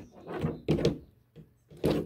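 A knife chopping at a frog on a work surface to crack its small bones, giving several dull knocks: one at the start, two about half a second to one second in, a faint tick, and a loud one near the end.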